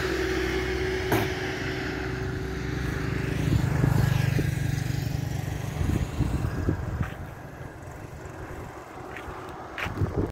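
Traffic on a two-lane highway: a road vehicle passing close by, its engine and tyre noise swelling to a peak about four seconds in and then fading away.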